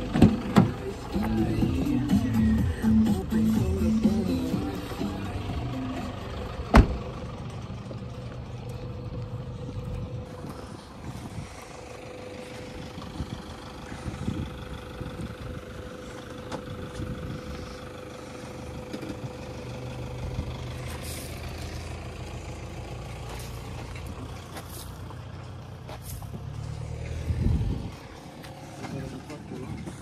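Pickup truck engine running, with a door shut in one sharp knock about seven seconds in. Voices talking in the first few seconds.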